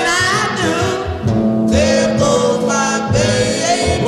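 Late-1950s R&B record: sung vocals over a band accompaniment, the voices gliding between held notes.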